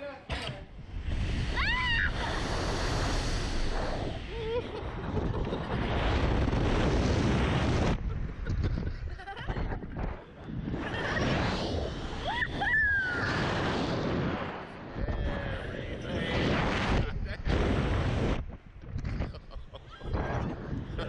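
Wind rushing over the on-board microphone of a SlingShot reverse-bungee ride as it launches and flies, with riders screaming and laughing: high rising screams about two seconds in and again around twelve seconds.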